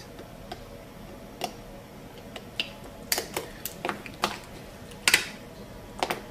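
Small sharp clicks and taps of a steel mosquito hemostat against the brackets and plastic teeth of a typodont while elastic power chain is fitted, irregular and several to the second around the middle, with a louder click about five seconds in.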